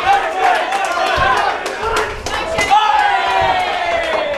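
Spectators and cornermen shouting and yelling over one another during a fight, with a few sharp smacks of strikes landing.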